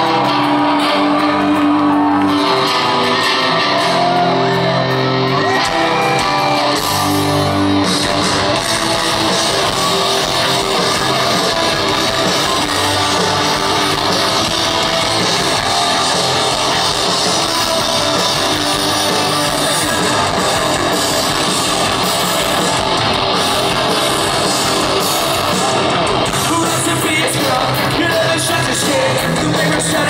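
Live rock band playing loud and heard from within the crowd. About eight seconds in, the sustained guitar chords of the opening give way to the full band with drums. Shouted vocals come in over it.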